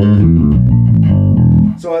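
Gamma Jazz Bass with active EMG pickups, played loud through a Bergantino HDN410 bass cabinet: a quick run of notes with a deep, fat low end, which stops abruptly near the end.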